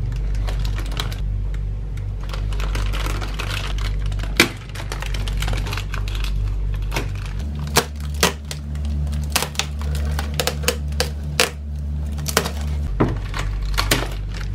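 Plastic packaging being cut open with scissors and handled: crinkling bags, snips, and a run of sharp clicks, thickest in the second half. A steady low hum runs underneath.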